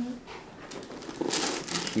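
Rustling and crinkling of a patient's gown and clothing as she is moved and positioned on a chiropractic table, starting about a second in after a short "mm-hmm".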